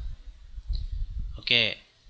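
A faint computer mouse click, then a man says "okay", over a low steady background hum.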